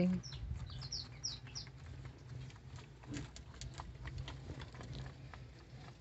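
A bird chirping: about six short, high, falling chirps in the first second and a half, followed by faint scattered clicks over a low steady hum.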